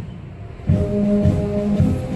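Military brass band playing low held brass notes over heavy drum beats. The music drops away briefly and comes back in about two thirds of a second in.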